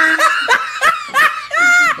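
People laughing: a run of short laughing bursts, then one longer, higher one near the end.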